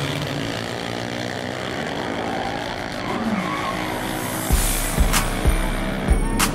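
Loud, even roar of drag-racing cars on the track, with music over it whose drum beat, a kick about twice a second, comes in about four and a half seconds in.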